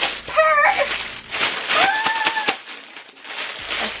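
A woman's voice making wordless sounds: a brief one near the start, then a held, arching note of about a second in the middle. Under it, clear plastic packaging crinkles as it is handled, dying away near the end.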